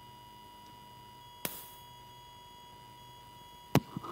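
Two sharp clicks, the first about a second and a half in and a louder one near the end, over a faint steady tone.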